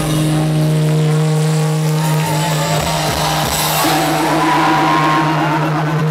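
Live rock band holding a steady, droning chord with a high cymbal-like wash over it; a wavering higher note joins about four seconds in.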